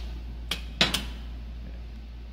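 Metal latch on a sheet-metal machine cabinet door being worked by hand: three sharp clicks in the first second, over a steady low hum.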